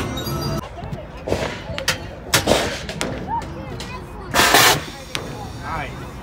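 Carousel music cuts off abruptly in the first second. Then an air cannon fires at targets: short sharp reports about two and two and a half seconds in, and a louder blast of about half a second near the end.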